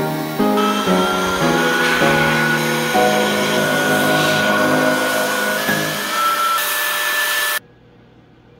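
Electric air blower running with a whine that rises slightly in pitch, blowing air over a freshly washed resin 3D print on its build plate to dry it, under piano background music. Both the blower and the music cut off abruptly near the end.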